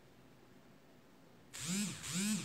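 Near silence, then two short hummed voice sounds near the end, each rising and then falling in pitch.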